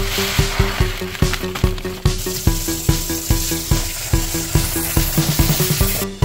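Background music with a steady beat, over the hiss of fine aquarium gravel pouring from a bag into a plastic bucket, strongest in the first two seconds.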